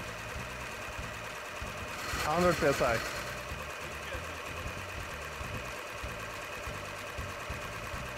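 3D-printed six-cylinder radial air compressor, driven by an electric motor, running steadily under load as it pumps a bottle up to high pressure, near 10 bar. A short voice is heard about two seconds in.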